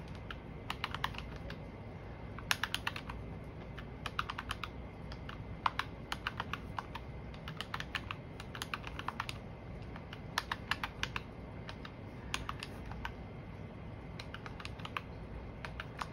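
Keys of a plastic desktop calculator clicking under a fingertip, in quick irregular runs of presses with short pauses between, as a column of figures is totalled.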